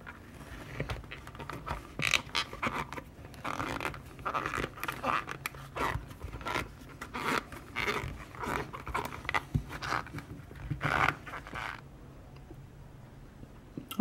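Soaked leather being pressed, rubbed and folded by hand to wet-form it around a tin: irregular rustling, squishing scrapes in short bursts that stop about two seconds before the end.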